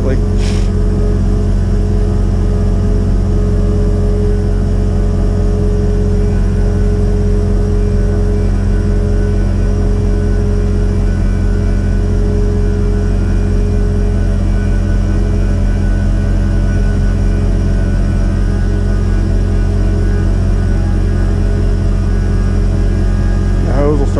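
Truck engine and its PTO-driven vacuum pump running steadily, pressurizing a vac trailer to push production water out through the offload hose. The sound is a loud, constant mechanical drone with a steady hum.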